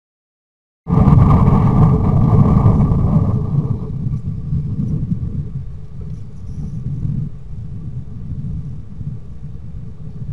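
A low rumbling noise that starts abruptly about a second in, loudest for the first three seconds and then easing to a steadier, quieter rumble.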